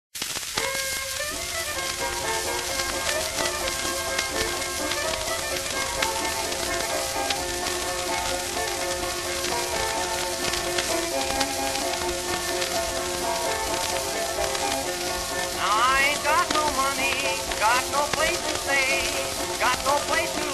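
Old-time string band (fiddle, banjo, mandolin, guitar and ukulele) playing an instrumental passage with no singing, heard off a 1924 acoustic-era 78 rpm shellac disc with constant surface crackle and hiss. The playing gets louder over the last few seconds.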